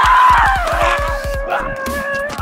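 A long, drawn-out scream that starts high, slides down over about a second and then holds a lower pitch, over background music with a fast pulsing beat.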